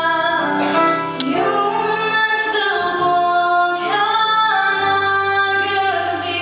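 A young girl singing a slow song solo into a microphone, holding long notes.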